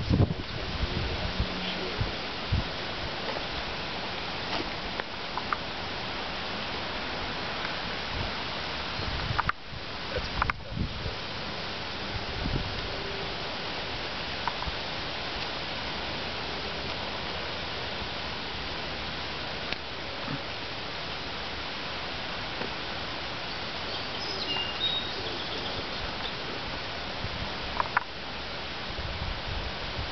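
Steady outdoor background noise of wind and rustling leaves, with a few scattered light knocks and a brief dropout about a third of the way in. A few faint high chirps near the end.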